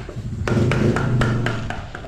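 Small hammer tapping on wood, several sharp, irregular knocks in quick succession.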